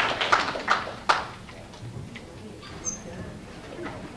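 Audience applause trailing off, with a few last claps in the first second. After that the room is quiet, with a faint murmur of voices and small knocks.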